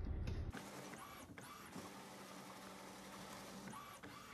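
Inkjet printer running faintly, giving three short motor whirs that rise and fall in pitch: two about a second in and one near the end.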